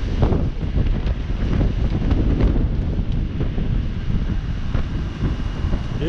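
Gusty wind ahead of a thunderstorm buffeting the microphone: a dense, low rushing noise that rises and falls with the gusts.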